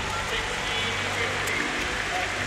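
Arena crowd cheering and applauding in a steady wash of noise, with background music underneath.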